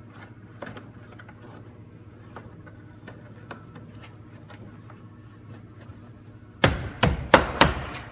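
Hands working the rubber weatherstrip and plastic cargo-area trim at the tailgate opening: faint rubbing and small clicks, then in the last second and a half about five sharp knocks in quick succession as the trim is pressed and tapped into place.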